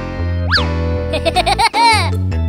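Upbeat children's background music with cartoon sound effects laid over it: a quick up-and-down whistle glide about half a second in, then a run of springy boings that climb in pitch near the end.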